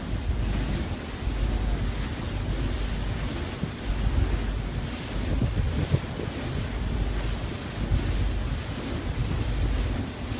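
Wind buffeting the microphone in uneven gusts over the rush of churning sea water and spray along a moving ferry's hull.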